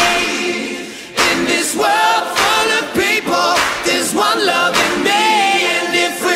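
A pop song with several voices singing together over light accompaniment, with almost no bass.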